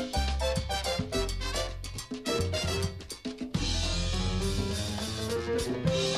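Salsa band playing an instrumental passage, with a drum kit and Latin percussion keeping a dense rhythm under sustained pitched instrument notes.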